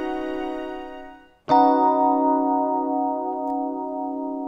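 A held chord dies away, then about a second and a half in a B major ninth chord over a C-sharp bass is struck on an electric piano and sustained, a bright-sounding voicing.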